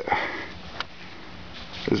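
A person sniffing, a short breath in through the nose, followed about a second in by a faint single click.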